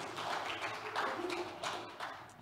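A few faint, scattered claps from a congregation, irregular and sharp, with a brief murmured voice about halfway through.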